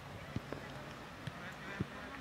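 Quiet outdoor background with three faint, short knocks, the sharpest near the end.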